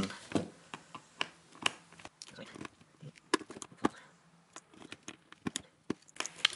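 Light, irregular clicks and taps of a wire switch puller gripping and pulling Kailh low-profile Choc key switches out of the Dirtywave M8's hot-swap sockets, with switches knocking against the case.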